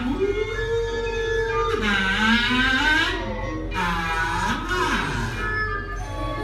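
Kazoo played in sliding, swooping pitches: a rise in the first second held for about a second, then drops and climbs with a wavering, buzzy tone, over steady background music.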